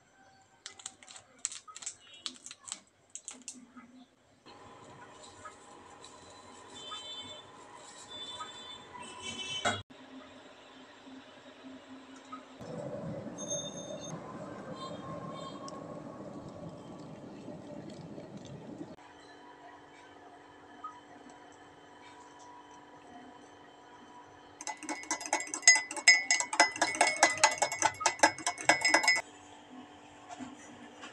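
Instant cappuccino being made in a ceramic mug. First come scattered clicks and light clinks, then an electric kettle's water boiling as a steady rush for about six seconds. Near the end a spoon beats fast against the mug for about four seconds, a dense run of clinks that whips the coffee to a froth.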